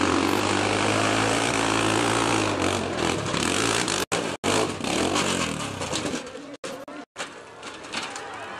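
Off-road motorcycle engine running with a fairly steady note for the first few seconds, then more ragged. The sound drops out abruptly several times in short gaps.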